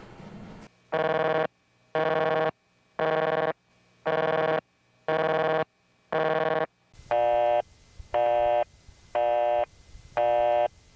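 Telephone busy tone from an electromechanical ringing machine, beeping about once a second. The first six beeps are harsh and raspy, the old collector-ring kind of tone; about seven seconds in it changes to a smoother, warmer busy tone from the machine's tone alternator.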